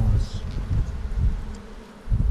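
Honeybees buzzing as a crowded brood frame is lifted out of an open hive box, growing quieter toward the end.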